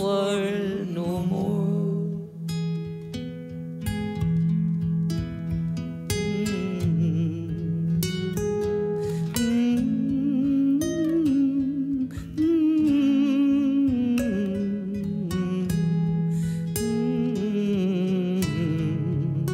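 Two acoustic guitars playing an instrumental break in an Irish folk song, picked notes over steady bass notes.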